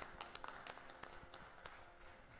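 Faint, scattered hand clapping from a small congregation, thinning out towards the end.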